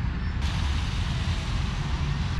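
Steady low rumble of traffic on a nearby street.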